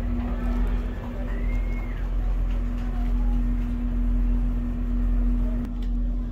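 Steady drone of the tour boat's engines and machinery heard from inside the hull: a deep rumble with one steady hum tone over it.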